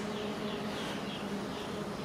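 A flying insect buzzing steadily in one low hum throughout, with faint short high chirps behind it.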